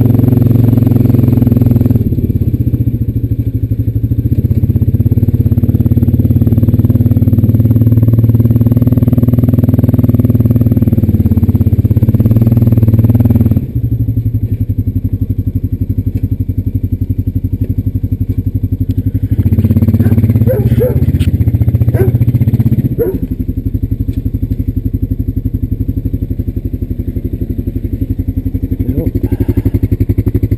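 Honda Rancher 420AT's single-cylinder four-stroke engine running under throttle as the ATV is ridden, then dropping suddenly to a steady idle a little under halfway through. It comes up louder again briefly about two-thirds of the way in, with a few sharp clicks, before settling back to idle.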